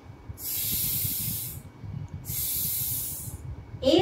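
A woman hissing the phonic sound of the letter S, 'sss', twice, each held for over a second with a short pause between.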